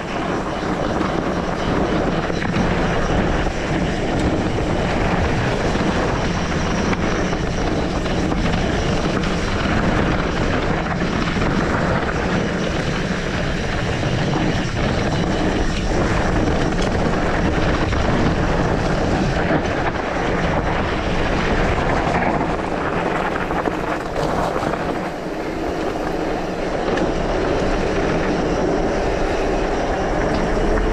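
Steady rush of wind on the microphone mixed with tyre and trail noise from an e-mountain bike riding fast down a dirt and gravel track, with a few small knocks from bumps. A low steady hum becomes more distinct near the end.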